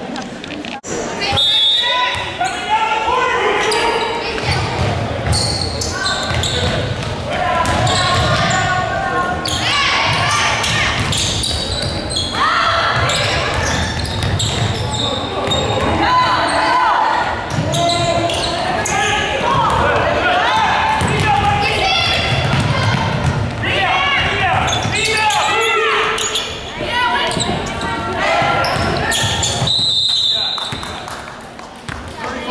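Basketball game in a gymnasium: a ball bouncing on the hardwood court amid shouting from players and spectators, echoing in the large hall.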